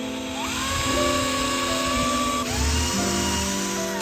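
Cordless FLEX drill spinning a small bit into a wooden rail, its motor whining steadily; the whine dips about halfway through and climbs back up as the bit bites again.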